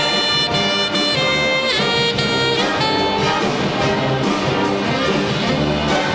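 Large wind orchestra of saxophones, trumpets, trombones and tubas playing a loud, steady instrumental passage of a cha-cha dance medley, with brief sliding brass notes about two seconds in.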